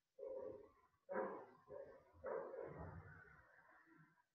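Faint animal calls, four in a row, the last one drawn out longest.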